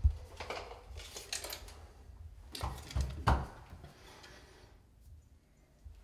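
Dull knocks and rustling from a person moving about and handling things at a bathroom vanity, with a few short thumps grouped around two and a half to three and a half seconds in, then quiet.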